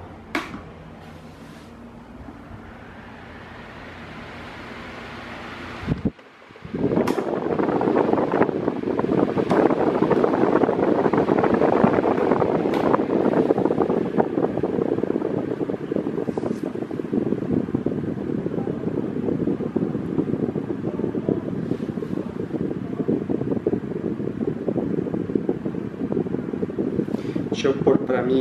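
A Mallory Eco TS 30 cm, 42 W desk fan is switched on with a click of its knob and spins up with a soft, gradually rising whoosh. After a brief break about six seconds in, it gives a louder, steady rush of air, the sound of the fan running and blowing toward the microphone.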